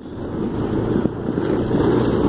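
Steady low rumbling noise of a vehicle on the move, heard from on board.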